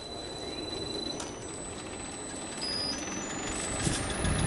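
Electric motor of a homemade impact huller starting up and spinning its impeller. A thin high whine rises in steps over the last second or so as the machine gathers speed.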